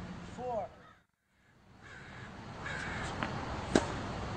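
Birds calling outdoors, with a short drop to silence about a second in, and a single sharp crack near the end.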